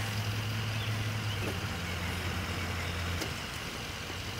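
A vehicle engine idling: a steady low hum that stops a little over three seconds in.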